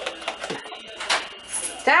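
Indistinct, broken speech mixed with a few small knocks and rustles, then a voice starts calling out "tchau" right at the end.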